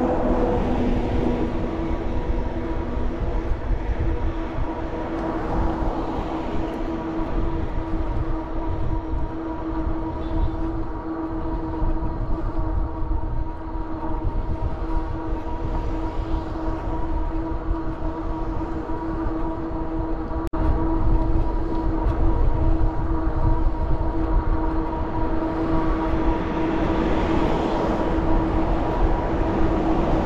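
Electric bike motor whining steadily at cruising speed, as a hum of several fixed tones, over wind rushing across the microphone and tyre and road noise. A single sharp click comes about two-thirds through, and the road noise swells near the end.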